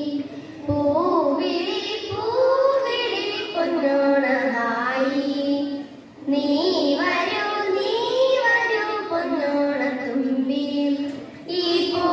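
A group of children singing together, one melody line sung in phrases with short breath breaks about half a second in, halfway through and near the end.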